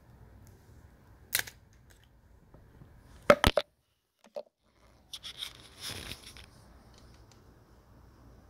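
Handling noises from a Cosentyx Sensoready autoinjector pen being brought to the thigh: a single click, then a quick pair of sharp clicks about three seconds in, the loudest sounds, followed by about a second of rustling.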